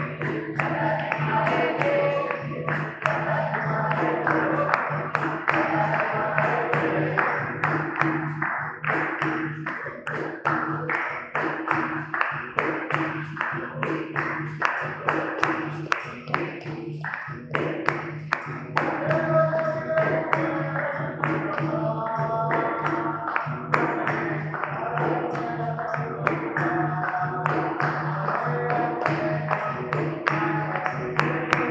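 Live capoeira roda music: berimbaus and an atabaque drum keeping a steady rhythm, with hand-clapping and call-and-response singing.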